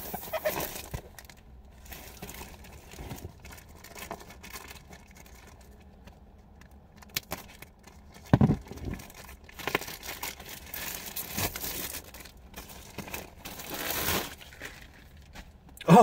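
Plastic mailing bag being torn open by hand and a plastic-wrapped package pulled out of it: irregular rustling, crinkling and tearing of plastic, with a short louder burst about halfway through and a louder stretch of rustling near the end.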